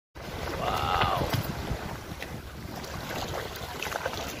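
Wind buffeting the microphone in a low, uneven rumble, with a brief rising-then-falling call about a second in.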